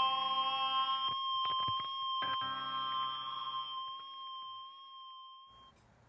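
The final held chord of a lo-fi rock song: several steady, pure-sounding tones sustained and fading out, with a few faint clicks in the first couple of seconds, dying away to near silence near the end.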